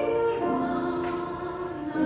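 A woman singing in a classical, operatic style with piano accompaniment, moving down to a lower held note about half a second in.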